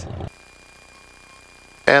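A man's voice and laugh trailing off, then a quiet stretch with a faint steady high-pitched whine, then a man starts talking again near the end.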